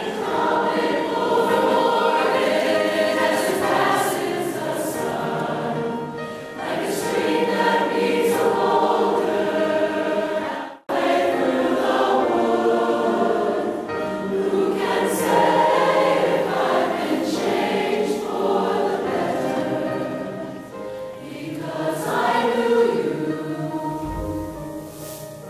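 A large mixed choir singing. The sound cuts out for an instant about eleven seconds in, then the singing goes on.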